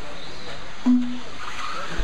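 Electric 1/10 RC buggies running on an indoor dirt track, a steady hiss of motors and tyres on loose dirt filling the hall. About a second in, a short, loud beep-like tone sounds once.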